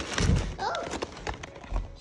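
Cardboard shipping box and its packaging being rummaged and handled as a boxed puzzle is pulled out: scattered light rustles and clicks, with one dull thump shortly after the start.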